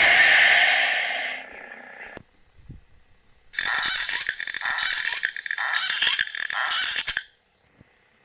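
A closing jingle with bells fades out over the first second and a half. About three and a half seconds in, a loud rattling, ratcheting clatter of dense clicks starts, runs for nearly four seconds and stops abruptly.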